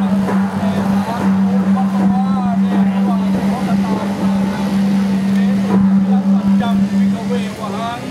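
A steady low hum under several people's voices.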